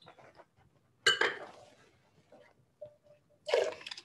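A wine taster slurping a mouthful of red wine, sucking air through it with a wet hiss about a second in, then spitting it out near the end.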